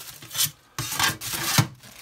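Anodized machined-aluminum floor plates sliding and scraping across a cabinet shelf: a short scrape, then a longer one that ends in a sharp knock about one and a half seconds in.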